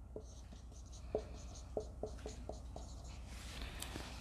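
Marker pen writing on a whiteboard: a faint run of short strokes and taps, about seven of them, as a word is written letter by letter.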